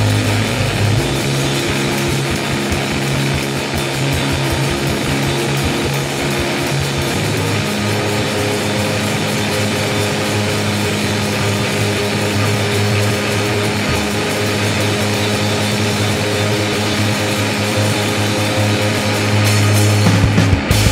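Live rock band playing a loud instrumental passage with no vocals: electric guitar and bass guitar holding sustained notes over a dense wall of guitar sound. The bass notes change about a second in and again around seven seconds in.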